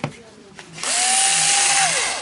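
Black & Decker KC460LN 3.6 V cordless screwdriver run with no load for about a second: its motor and planetary gearbox whine up to a steady high pitch, hold, then wind down when the trigger is released. A short knock comes first as the tool is picked up.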